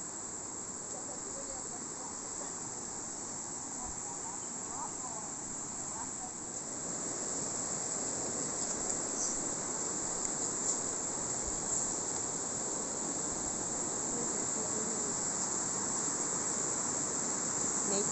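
Steady high-pitched chorus of insects, over the rush of a rocky river that grows louder from about a third of the way in.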